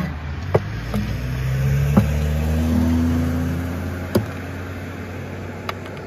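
Steel-string acoustic guitar strummed in a handful of separate strokes, its chords ringing on between them, over a low rumble that swells toward the middle and then fades.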